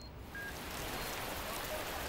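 A short faint beep, then a steady hiss like rain that comes in a quarter of a second in and holds.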